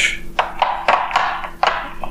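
Small socket ratchet wrench handled and set back into its hard plastic case: several sharp knocks, with a run of clicking between them.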